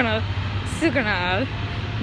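Steady low rumble of passing road traffic, with a woman's voice speaking briefly about a second in.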